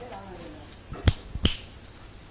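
A faint murmured voice, then two sharp clicks about half a second apart near the middle, from objects handled close to the microphone.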